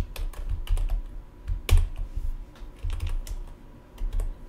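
Computer keyboard typing: a run of irregular keystrokes, with one key press a little under two seconds in louder than the rest.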